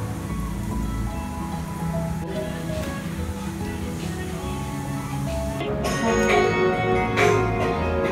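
Background music: a gentle instrumental over a steady low bass, changing a little over halfway through to a brighter, busier passage with sharp percussive strikes.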